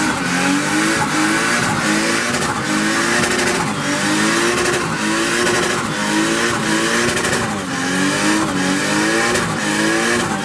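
A car doing a burnout: the engine revs in repeated rising surges, about once a second, while the spinning tyres squeal steadily against the pavement.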